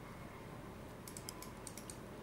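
Faint computer keyboard typing: a quick run of light key clicks in the second half, over a steady low hum.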